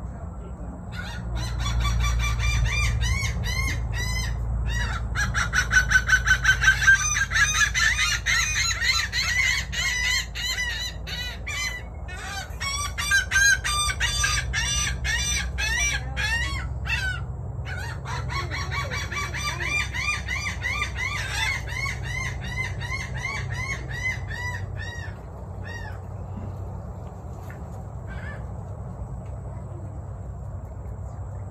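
Caged birds calling noisily: long, fast runs of sharp repeated notes, loudest about six seconds in, with a short break past the middle, fading out about five seconds before the end.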